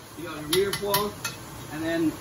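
A metal wire skimmer stirring vegetables and tomatoes in a large cooking pot, with a quick run of metal clinks against the pot between about half a second and a second and a quarter in.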